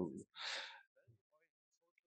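A short, audible intake of breath at the microphone after the end of a spoken phrase, then near quiet with a few faint, distant speech fragments.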